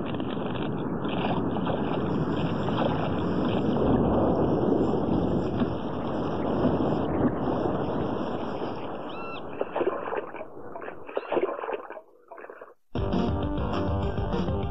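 Storm noise of wind and rain: a steady rushing for about ten seconds, breaking up into gusts and dropping out briefly. Music then cuts in abruptly near the end.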